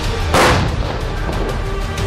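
A single shot from a T-72 tank's 125 mm main gun about a third of a second in: a short, sharp blast over background music.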